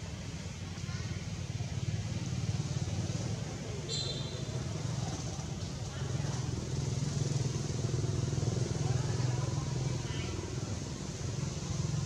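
A steady low engine rumble runs throughout, with faint voices in the background and a brief high chirp about four seconds in.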